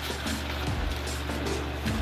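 Clear plastic packaging crinkling as a bag is pulled out of it, over steady background music.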